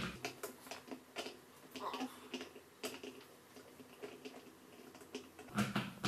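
Scattered light clicks and taps, one sharper about three seconds in, as a Clover CT9000 polisher's 6-inch backing plate is handled and lined up onto the counterweight nut.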